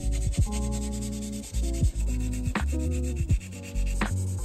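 A sanding stick rubbing back and forth on a plastic model car body, smoothing away the mould parting lines around the A-pillar, heard under louder background music of sustained chords.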